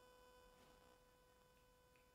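Near silence: room tone with a faint steady electrical tone.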